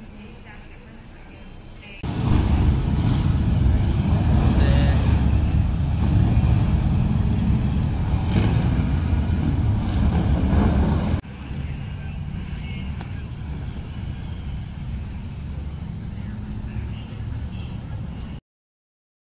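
Outdoor street background: a heavy low rumble of traffic with indistinct voices, in three stretches cut one after another. It is quiet for about two seconds, much louder until about eleven seconds in, then moderate.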